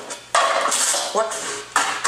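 Aggressive kitchen clatter: a hand chopping and slamming down on a cutting board amid crashing, clanking utensils and dishes. Two sudden loud crashes, one about a third of a second in and one near the end.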